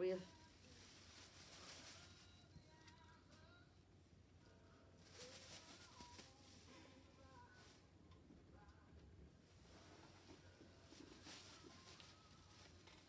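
Near silence, with faint rustling of a plastic shopping bag now and then and faint distant voices.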